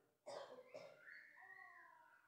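Near silence, with a faint, high, wavering voice-like cry lasting about a second, starting about a second in.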